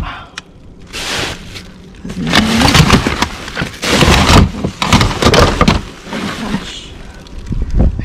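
Hands rummaging through rubbish in a dumpster: plastic bags and wrapping rustling and hard plastic cases knocking together, in a series of loud, irregular bursts.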